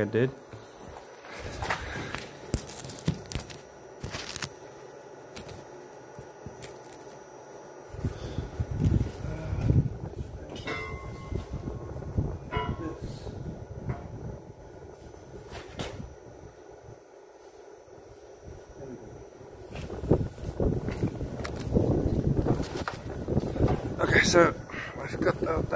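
Heavy steel beam being turned over and handled on a workshop base, giving scattered knocks and clanks with a brief metallic ring about halfway through, over low rumbling noise on the microphone.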